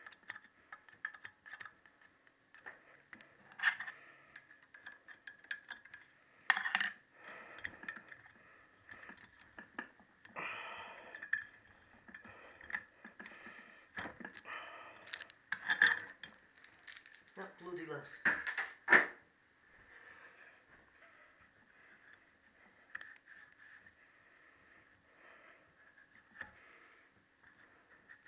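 Small metallic clicks and scrapes of a steel pick and a valve spring compressor as collets are worked into the spring retainer on a Triumph T120R cylinder head. Several sharper clinks are scattered through, and a faint steady high whine runs underneath.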